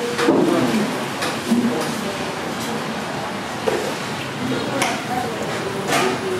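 Indistinct talking in short snatches over a steady background din.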